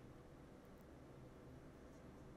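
Near silence: only a faint steady hiss and low hum from a fan running in the room, which the Maono PM471TS USB condenser microphone almost entirely shuts out.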